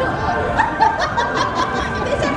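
Several women laughing and chuckling together over overlapping chatter.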